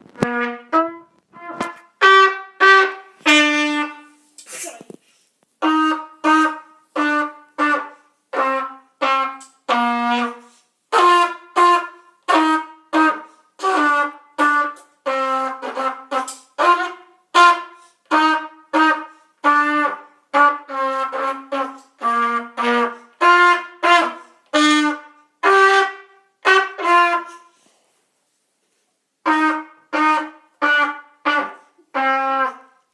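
Cornet playing a slow tune as a string of separate notes, one or two a second, with a short break near the end before the notes start again.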